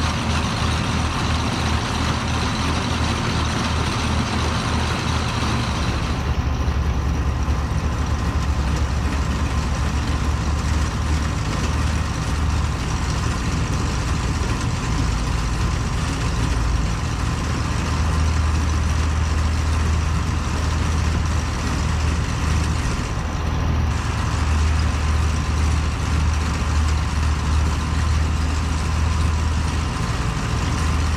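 Farm tractor engines running steadily, a continuous low drone, with the sound changing about six seconds in.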